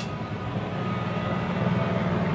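A steady low rumble of background noise, growing slightly louder.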